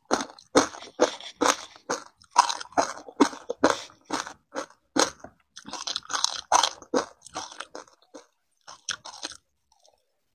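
A person chewing a mouthful of small ice granules close to a lapel microphone: a quick run of crisp crunches, about two or three a second, that thins out and stops near the end.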